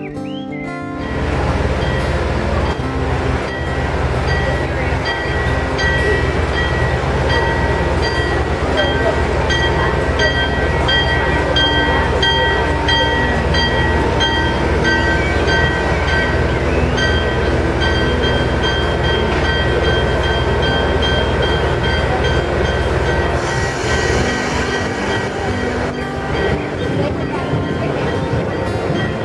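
Diesel switcher locomotive running as it moves slowly alongside a passenger coach: a steady low engine drone under a rumbling wash, with thin, high, steady tones coming and going above it. Near the end the engine note drops and a higher hiss comes in.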